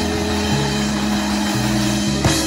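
Live rock band of electric guitars, bass, drums and keyboard holding long, sustained chords over a wash of cymbals, the chord changing twice.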